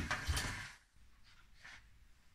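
A stainless steel saucepan scraping as it is set down and slid onto the hotplate of a range cooker, over about the first half-second, then a few faint knocks and rustles.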